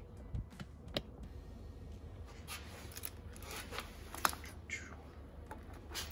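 A steel timing chain and cam sprocket clinking lightly as they are handled and fitted over an LS engine's crank sprocket: scattered small metallic clicks and rattles, the sharpest about four seconds in.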